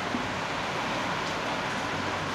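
Steady, even background hiss in a small room between spoken phrases, with no distinct events.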